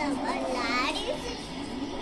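A little girl's voice: a short, high, sliding utterance in about the first second. A steady faint hum runs under it.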